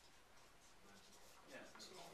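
Near silence in a small classroom: faint scratching of pens on paper while students write, with a low voice briefly murmuring near the end.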